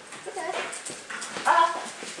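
A dog vocalising: quieter whines, then one short, loud cry about one and a half seconds in.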